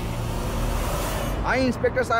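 A swelling rush of noise, a dramatic whoosh effect, that builds to about a second in and fades, followed by a voice near the end.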